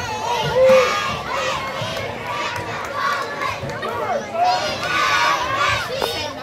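Youth football crowd shouting and cheering as a play starts, many voices overlapping, with one loud high call about a second in.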